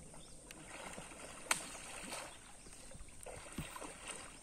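Water sloshing and splashing irregularly as a cluster of mugger crocodiles jostles at the surface, with one sharp click about one and a half seconds in and a faint steady high whine behind.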